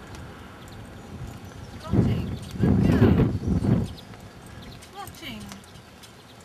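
Clip-clop of a llama's feet and a cart going along a road, with a person's voice in the middle for about two seconds.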